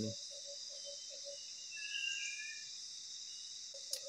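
Tropical forest ambience: a steady high-pitched chorus of insects, with a low note pulsing about four times a second that stops a little after the first second and returns near the end. A few soft whistled bird notes, gliding up and down, come near the middle.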